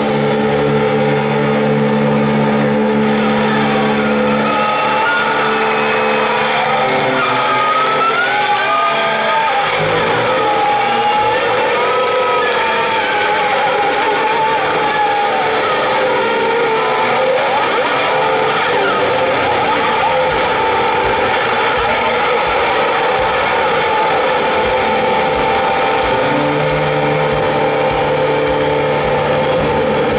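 A hard-rock band playing live at full volume: distorted electric guitars hold steady notes, and from about four seconds in a lead guitar plays bending, sliding notes.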